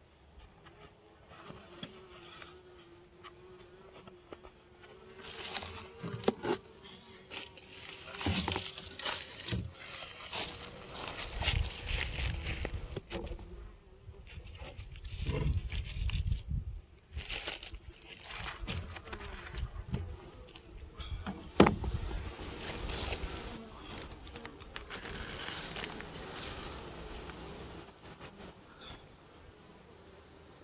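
Honey bees buzzing at a wooden hive, one bee's steady whine holding for several seconds. Knocks and scraping come from the middle on, as the upper hive box is pried up and tipped open, with a sharp knock about two-thirds of the way through as the loudest sound.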